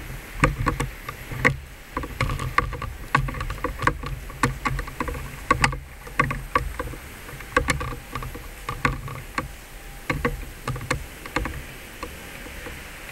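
Irregular knocks and low thuds, about two or three a second, from someone walking with a handheld camera: footsteps and handling noise on the microphone.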